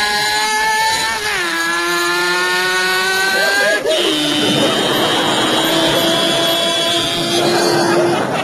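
A man's voice imitating a Suzuki motorcycle engine at high revs: a long, steady whining note that dips slightly about a second and a half in, then a second, lower held note from about four seconds in, like a gear change.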